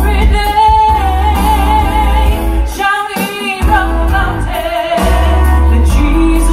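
A woman singing a song into a microphone, amplified through a PA, over an instrumental backing track with a steady bass line.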